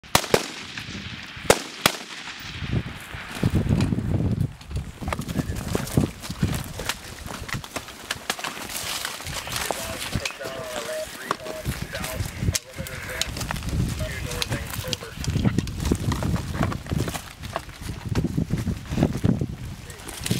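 Small-arms gunfire: scattered rifle and machine-gun shots all through, the loudest sharp cracks in the first two seconds, over a low rumble.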